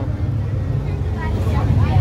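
Bus engine and running gear heard from inside the passenger cabin: a steady low rumble as the bus moves off.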